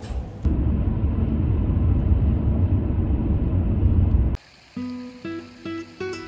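Loud, steady low rumbling noise for about four seconds, which cuts off abruptly; plucked acoustic guitar music then begins.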